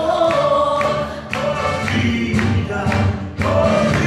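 A group of voices singing a song together in chorus, over music with a regular beat of sharp hits.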